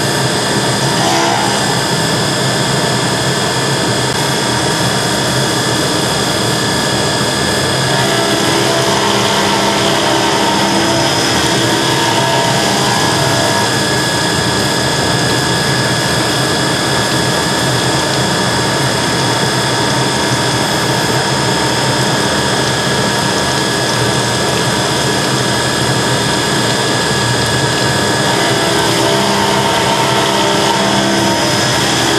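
CNC milling machine cutting a solid steel part under flood coolant: a loud, steady machining sound with several held whining tones over a spraying hiss.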